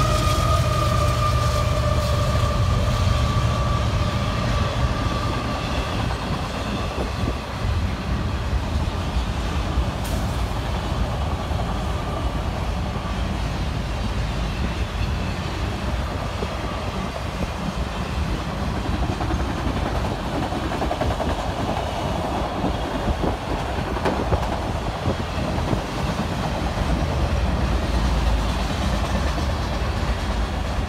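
Freight train of auto rack cars rolling past, with a steady rumble and wheel noise on the rails. A high, ringing tone slowly sinks in pitch and fades over the first dozen seconds, and irregular clicks of wheels over the rail joints come through later.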